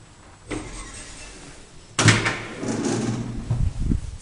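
Elevator door being worked: a sudden clatter about halfway through runs for a second or so over a low hum and ends in a knock just before the end.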